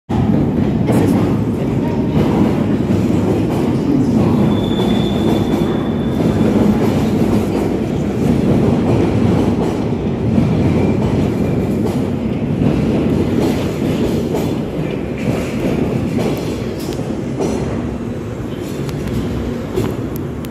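Bakerloo line tube train (1972 Stock) running through the platform and out into the tunnel: a loud, steady rumble of steel wheels on rails, with a brief high wheel squeal about five seconds in, easing off a little near the end.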